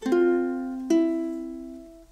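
Makai concert ukulele in standard tuning played fingerstyle: an F chord plucked at the start, then a second chord about a second in with a finger lifted so the melody note E sounds. Each chord rings and fades away.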